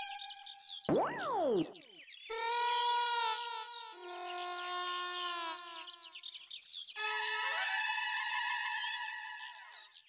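Comic background music: a quick falling glide about a second in, then held chords from about two seconds in and again from about seven seconds, with high chirp-like warbles over the top.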